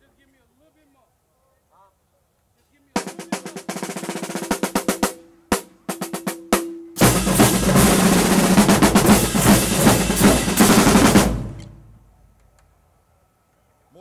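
Marching drumline of snares, tenors, bass drums and cymbals. About three seconds in it starts with a run of fast drum strokes, then a few separate hits. From about seven seconds a loud full-section roll sounds, and it dies away by about twelve seconds.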